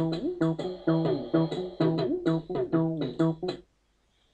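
Rubberduck software bass synthesizer, a TB-303-style emulation, playing a fast sequenced acid bass line of short, rhythmic notes with pitch slides between some of them. It cuts off suddenly about three and a half seconds in.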